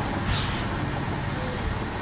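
Steady low rumble of road traffic, with a brief hiss about a third of a second in.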